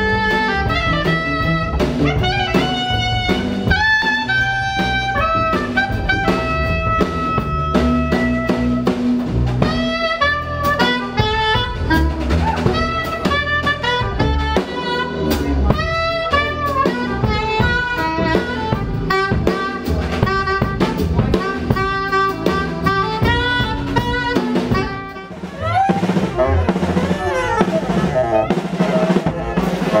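Live jazz quartet playing: a soprano saxophone plays a melody over double bass and a drum kit, with busy drum and rimshot strikes. The band drops in loudness briefly near the end, then comes back in.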